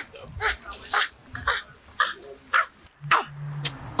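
A dog barking repeatedly, about twice a second.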